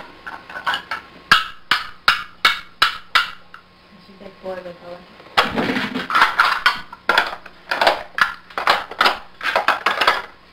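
Hard plastic toy blocks and shape-sorter pieces clacking and knocking together in quick, irregular taps, getting busier about halfway through.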